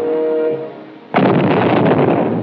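Music with held notes fades out, then about a second in a sudden loud explosion goes off and carries on.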